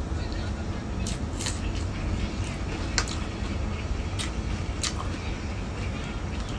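Eating sounds: a handful of short, sharp mouth clicks and smacks from chewing, scattered over a steady low rumble.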